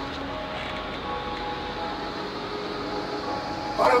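A steady, even noise with a faint hum of several held pitches, like a running machine.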